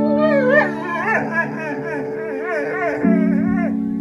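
A Doberman howling in a wavering, warbling voice, stopping shortly before the end, over background music with sustained keyboard chords.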